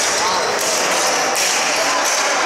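Ball hockey game sounds: players' shouts over the knocks of sticks and the ball on the arena floor.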